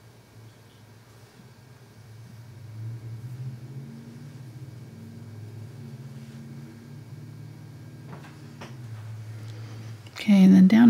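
A low, steady hum that swells about two seconds in and holds, with a few faint soft sounds near the end.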